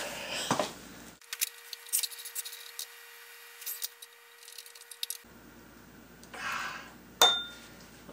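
Wrench working a tight nut on the feed handle of an antique Sipp drill press: scattered light metallic clicks and clinks, with one sharp ringing clink near the end.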